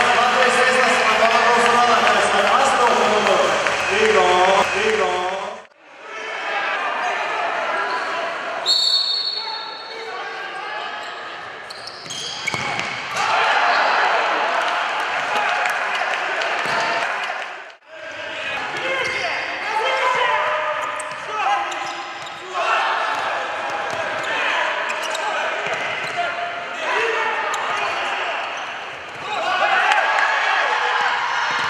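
Futsal match sound in a large sports hall: the ball thudding off players' feet and bouncing on the hard court, with shouting voices echoing. A short shrill tone about nine seconds in fits a referee's whistle. The sound breaks off abruptly twice, about six and eighteen seconds in.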